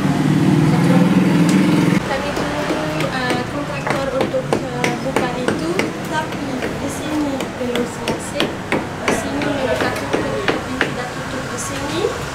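Irregular hammer knocks on a construction site, sometimes several in quick succession, with voices talking faintly in the background. A loud steady low hum fills the first two seconds and stops abruptly.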